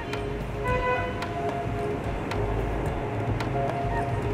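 Outdoor city street ambience: a steady low traffic rumble, with a brief horn-like tone about half a second in and faint music mixed in.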